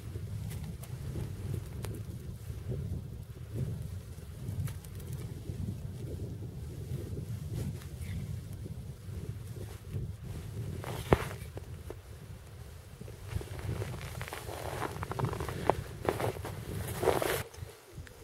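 Rustling and soft clicks of a man's gloves, winter clothing and tangled fishing line being handled, over a steady low rumble of wind on the microphone; one sharper click about two-thirds of the way in, and louder rustling near the end.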